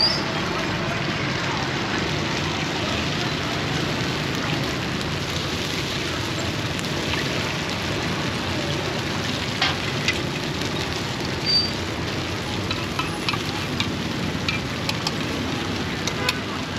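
Batter sizzling steadily in hot num kruok mould pans over a fire, with a few sharp clicks, more of them near the end.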